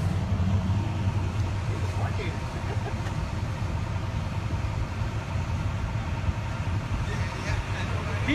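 A vehicle engine idling: a steady low hum, with faint street noise around it.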